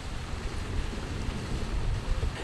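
Wind buffeting a small camera microphone outdoors: a steady rushing noise with an uneven low rumble.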